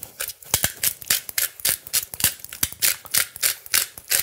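Hand-twisted pepper mill grinding peppercorns, a rapid run of crunchy, rasping strokes at about four to five a second.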